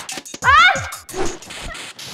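A woman's short, high-pitched startled cry of "ah!" that rises in pitch, followed by quieter hissy background sound.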